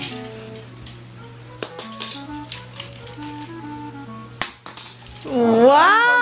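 Background music: a simple melody of short, steady notes over a low held tone, with a few light clicks. Near the end a loud voice glides up and then back down in pitch.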